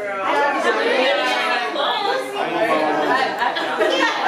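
Several voices talking and exclaiming at once: overlapping group chatter.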